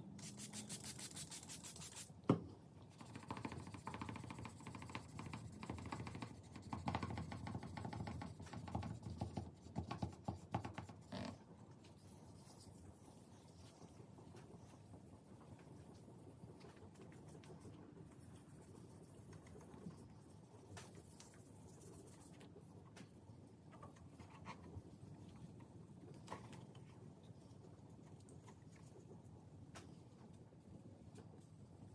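A few spritzes from a water spray bottle, a sharp knock about two seconds in, then hand wet-sanding of a guitar neck's clear coat with 1500-grit paper on a foam block: uneven back-and-forth rubbing strokes that fade to a faint rustle after about eleven seconds.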